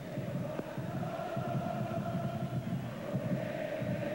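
Football stadium crowd chanting and singing together, a steady massed sound with a held note running through it.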